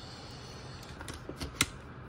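A few small clicks and taps from handling a PVS-14 night vision monocular as a tether is clipped onto it, the sharpest click about a second and a half in.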